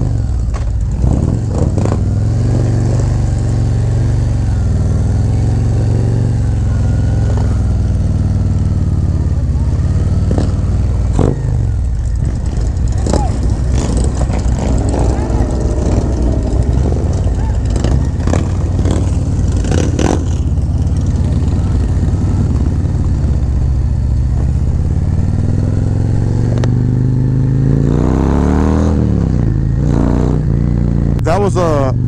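Harley-Davidson Road Glide's V-twin engine running under the rider as the bike rolls slowly out through a crowd, then pulling away with rising revs near the end.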